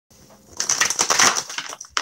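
A deck of cards being shuffled by hand: a dense, rapid clatter of card edges from about half a second in, ending with a sharp snap just before he starts to talk.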